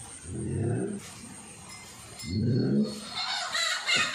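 A cow lowing, two short, low calls about two seconds apart.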